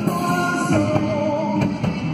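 Live band playing a song in a rock-and-roll style: saxophones, electric guitars, drum kit and keyboard together, loud and steady, with a wavering melody line carried over the accompaniment.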